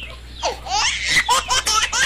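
A person laughing hard in quick, high-pitched bursts, starting about half a second in.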